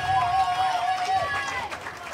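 A long, wavering vocal whoop, held for over a second, over faint crowd noise.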